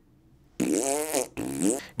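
A man making a silly, raspy vocal noise: starting about half a second in, a drawn-out sound that rises then falls in pitch, then a second, shorter one.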